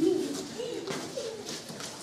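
A child's voice making a few short, soft, low sounds, murmured or hummed rather than clear words.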